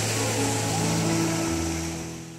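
Small waves breaking and washing up onto a sandy shore in a continuous rush of surf, with a low steady engine drone from a distant motorboat underneath.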